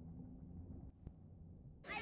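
Faint, muffled sloshing and rumbling of pool water, dull and with no high sounds, as heard by a camera sitting at the waterline. It stops abruptly near the end.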